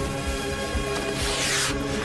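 Background music with steady held tones, over which a brief hissing rush of a gunpowder rocket launching comes in a little over a second in.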